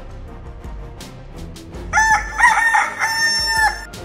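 A rooster crowing once, starting about two seconds in: a wavering start, then a long held note that stops abruptly. It is a daybreak cue over quiet background music.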